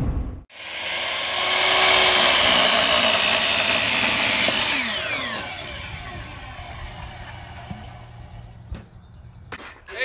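Hitachi compound miter saw cutting a wooden board, running loud for about three seconds. The blade then spins down with a falling whine. A few light knocks follow, with a sharper one near the end.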